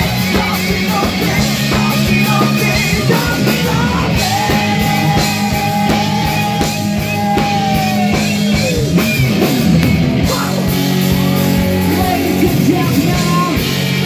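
Live rock band playing, electric guitars, keyboard and drum kit with sung lead vocals. A long held note enters about four seconds in and bends downward near nine seconds.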